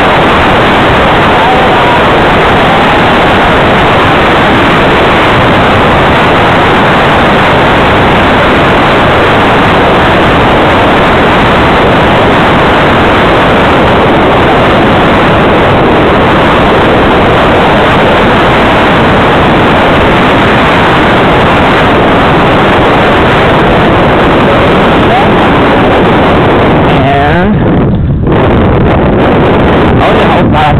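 Heavy, steady wind rush on the microphone of a fast-moving camera, easing briefly a couple of seconds before the end.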